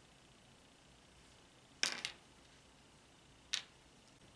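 Two short clicks as tiny plastic miniature toy food pieces are handled, the first a little before two seconds in and a smaller one about three and a half seconds in, over quiet room tone.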